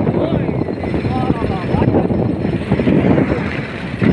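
Motorcycle running on the move, with wind rushing over the phone's microphone in a steady, dense rumble; a voice is heard briefly over it.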